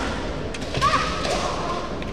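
Kendo exchange on a wooden dojo floor: sharp cracks of bamboo shinai strikes and a stamping step, about half a second in and just under a second in, followed by a fighter's long, held kiai shout lasting about a second as the two close to grappling range.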